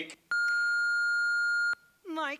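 Answering-machine beep from the show's sound cue: a single steady electronic tone held for about a second and a half, signalling the start of a recorded voicemail message.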